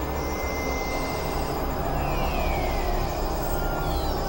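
Dense experimental electronic noise music: several tracks layered into one thick, steady wash with a heavy low end. A thin held tone sounds through the first second, and a few falling pitch glides come around the middle and again near the end.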